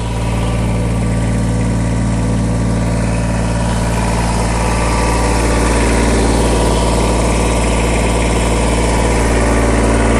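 Kubota BX2380 subcompact tractor's three-cylinder diesel engine idling steadily.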